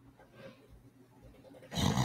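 Quiet room tone, then near the end a single short, loud, breathy vocal noise made close to the microphone, like a cough or a throat-clear.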